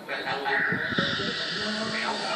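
A steady hiss lasting about a second and a half, starting about half a second in, played from a TV programme and picked up through the set's speaker, with a voice coming in near the end.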